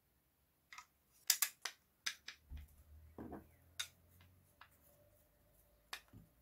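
Screwdriver turning a small Torx screw into the plastic housing of a Dyson DC23 turbine head: a string of sharp clicks and light scraping, starting just under a second in and thinning out after about four seconds.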